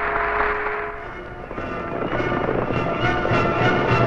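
Crowd applause and cheering over a music soundtrack, fading out about a second in; the music then carries on alone.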